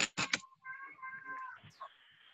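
A few sharp clicks, then a single drawn-out animal-like call with a steady pitch lasting about a second.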